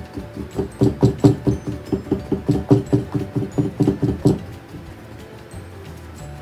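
A large square paintbrush patted rapidly against a stretched canvas, about five dull taps a second for some three and a half seconds, stopping a little past four seconds in. Soft background music runs underneath.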